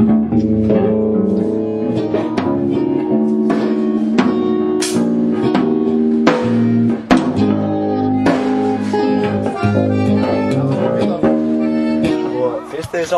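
A band playing: guitar chords held over a steady drum beat. The music breaks off near the end.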